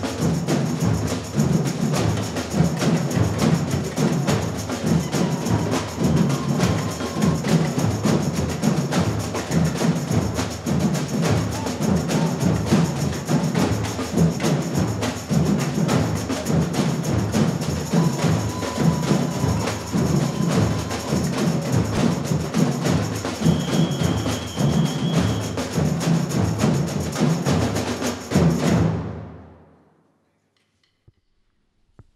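Samba drum band playing together: deep surdo bass drums pulse under fast stick-played snare and repinique drums in a driving, even rhythm. The sound fades out near the end.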